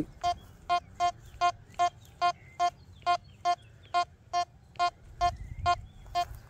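Quest Q60 metal detector giving short beeps, all at the same pitch and evenly spaced about two and a half a second, as the coil passes over a 10-cent coin at 15 cm depth: the detector is picking up the coin at that depth.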